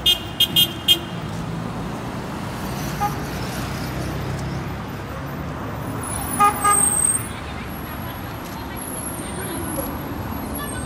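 Busy town street traffic with cars passing, and a vehicle horn tooting in a quick run of about five short beeps right at the start. A second, longer pitched honk sounds about six and a half seconds in.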